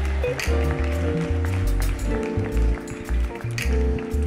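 Church band music: held chords over a moving bass line, the chord changing about two seconds in, with light percussion on top.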